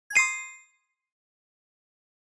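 A single bright chime sound effect, a ding of several ringing tones together, struck just after the start and fading out within about half a second.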